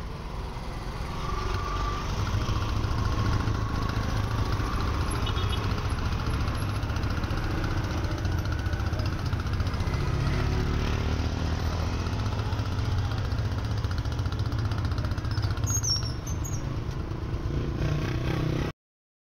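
Street traffic: a steady low engine rumble of passing vehicles. From about halfway, a three-wheeled auto-rickshaw's small engine runs close by.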